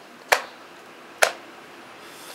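Two sharp clicks about a second apart, the sound of moves being made in a fast blitz chess game: plastic pieces set down on the board and the chess clock's button pressed.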